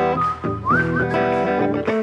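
Live rock band playing an instrumental passage: electric guitar and drums, with a high, thin melody line that slides up in pitch about two-thirds of the way through.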